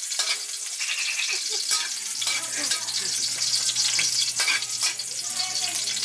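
Chopped garlic sizzling in hot oil in a metal wok, with a metal spatula scraping and tapping against the wok as it is stirred.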